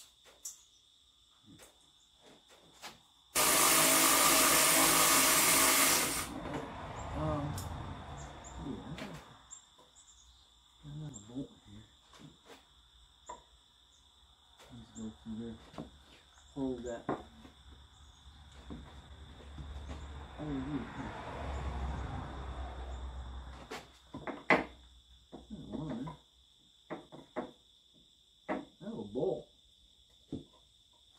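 A cordless power tool runs in one burst of about three seconds near the start, starting and stopping sharply, followed by scattered clinks and knocks of hand tools on metal as work goes on at the vehicle's rear hub.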